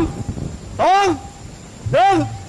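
An animal calling: a short cry that rises and falls in pitch, repeated about once a second.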